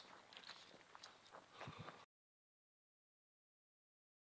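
Near silence: a faint hiss with a few soft ticks, then the sound cuts out to dead silence about halfway through.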